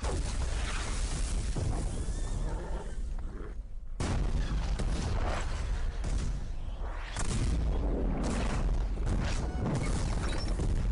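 Film battle soundtrack: horses neighing amid cannon fire and explosions, with a music score underneath. The din thins briefly about three seconds in, then picks up again.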